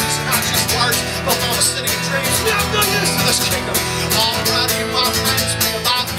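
Acoustic guitar strummed steadily, with electric bass notes underneath: an instrumental passage of a small band.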